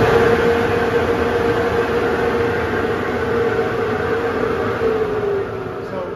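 Canister dust collector serving a downdraft sanding table, running with a steady hum and rush of air. It has just been switched on and holds steady, then dips slightly in pitch and gets quieter near the end.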